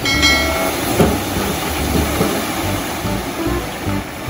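Dump truck engine running while a load of soil and rocks slides off its raised tipper bed onto a pile, a steady low rumble with a knock about a second in. A brief high tone sounds at the very start.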